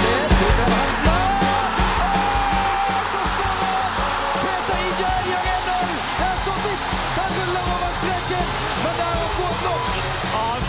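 Stadium crowd cheering and singing after a goal, a dense roar with held voices, mixed with background music.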